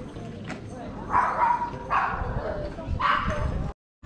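A dog barking three times, about a second apart.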